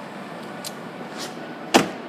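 A 2015 Mitsubishi Lancer's car door being shut, one solid thump near the end, over steady low room noise.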